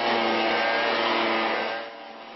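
Handheld gas leaf blower running steadily: an even engine hum over the rush of blown air, dropping away near the end.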